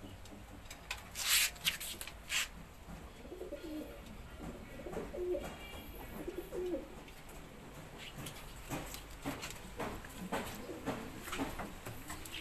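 Domestic pigeons cooing, low wavering coos mostly in the middle stretch. Several sharp clicks and rattles stand out above them, loudest a little over a second in and again scattered through the second half.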